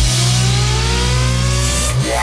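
An engine revving up, its pitch climbing steadily, over a steady low drone that cuts off abruptly at the end.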